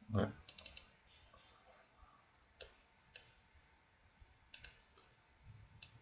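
Sharp, faint clicks of a computer being operated by hand: a quick run of about four half a second in, then single clicks and a pair spread over the next few seconds.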